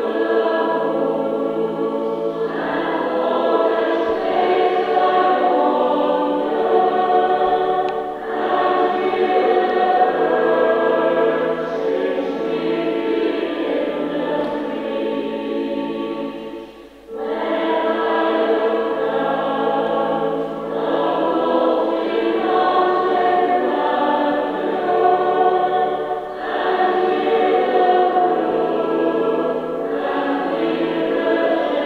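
Recorded choral music: a choir singing sustained chords in long phrases, with a brief break a little past halfway.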